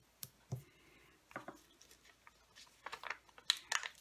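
Light clicks, ticks and paper rustles of cardstock and foam adhesive dimensionals being handled and pressed down on a cutting mat, with a quick run of sharper ticks near the end.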